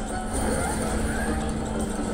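Casino floor din: a steady hum and murmur of background noise under the electronic sounds of a video slot machine as its free-spin reels clear and spin again.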